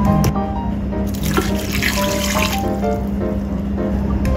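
Water poured into a rice cooker's inner pot over cut sweet potato pieces, a splashing pour starting about a second in and stopping after under two seconds, over background music.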